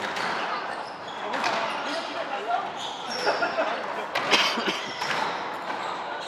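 Squash rally: a ball struck by racquets and rebounding off the court walls, heard as a string of sharp knocks at irregular intervals.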